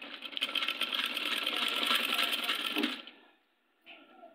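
Old black domestic sewing machine stitching at speed, a fast steady clatter of the needle mechanism that stops abruptly about three seconds in.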